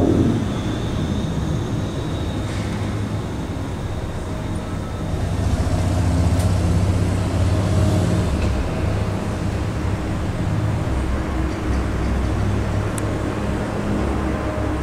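Low, steady drone of propellers and turboprop engines from a formation of Canadair CL-415 water bombers and a Dash 8 Q400 passing overhead. It grows louder about halfway through, then eases slightly.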